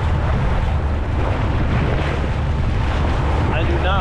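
Yamaha VX Cruiser HO WaveRunner's 1.8-litre four-stroke engine running steadily at low, no-wake speed, a constant low drone, with water washing along the hull and wind buffeting the microphone.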